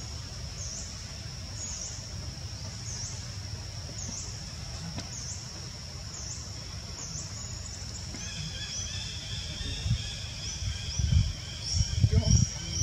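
Outdoor forest ambience: a steady high-pitched chirping call repeating about once a second, with a second, lower buzzing call joining about two-thirds of the way through. A low rumble runs underneath, with a few louder low thumps near the end.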